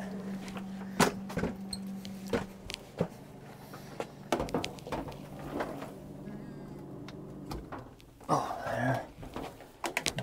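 Knocks, clicks and rustling as a man climbs onto a step stool and reaches behind a washer and dryer to unplug a freezer's cord. A steady electrical hum, the freezer running, cuts off about eight seconds in as it is unplugged, followed by a short grunt.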